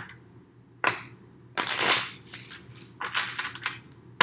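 A deck of tarot cards being shuffled by hand, in short bursts of cards rustling and slapping together, the longest about a second and a half in.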